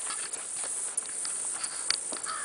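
Outdoor background of steady, high-pitched insect chirring, with a few faint clicks.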